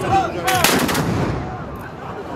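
A volley of black-powder muskets fired together by a line of infantry, a ragged cluster of shots about half a second in that dies away within a second.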